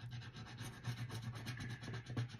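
A thin pen-like tool scratching and rubbing over a paper savings-challenge card in quick, repeated strokes.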